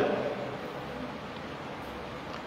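Steady, even background hiss of room tone in a pause between a man's sentences, with the tail of his voice dying away in the first half-second.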